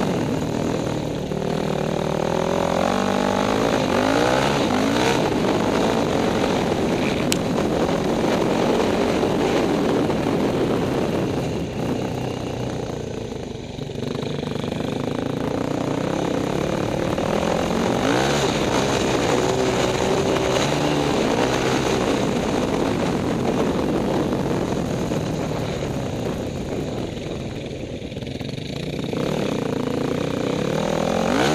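Yamaha WR450 dirt bike's single-cylinder four-stroke engine heard from on board, revving up and down through the gears as it rides over rough ground. The throttle eases off twice, around the middle and near the end, before picking up again.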